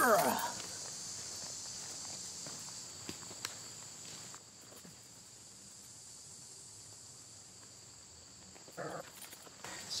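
A man's grunt of effort with a falling pitch as he hurls a small flashlight, then a steady, high-pitched chorus of insects. There are a couple of faint clicks about three seconds in and a few footsteps near the end.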